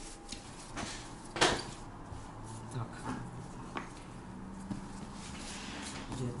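Hands kneading risen yeast dough on a floured countertop: soft pats and knocks, with one sharp slap about a second and a half in.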